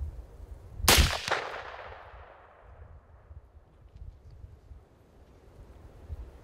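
A single .450 Bushmaster rifle shot about a second in, followed by a second crack a moment later and its echo dying away over the next two seconds.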